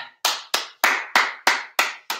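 One person clapping hands: six sharp, evenly spaced claps, about three a second.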